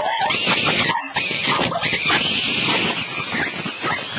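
Loud, raspy, distorted human laughter or snorting right up against the microphone, with brief breaks about a second in.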